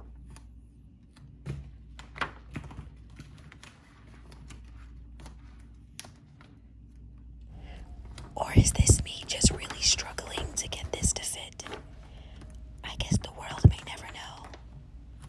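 Crinkling and rustling of a large self-adhesive peel-and-stick decal sheet being worked by hand around a doorknob, with scattered clicks and light knocks against the door. The handling is busiest a little past halfway through and again near the end.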